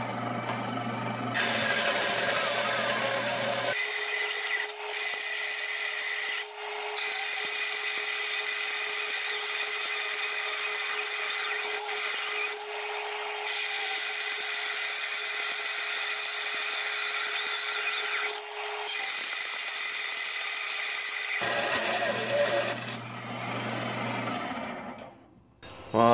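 Converted Craftsman wood bandsaw, geared down with pulleys for metal, its blade cutting through 10-gauge sheet steel. The cut is a steady high-pitched hiss with an even tone under it, from about 4 s in to about 21 s in, broken by a few short pauses. Before and after the cut the saw runs with a low hum.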